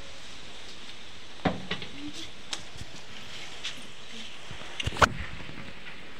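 A few short knocks and clicks over a steady background hiss, the sharpest about five seconds in.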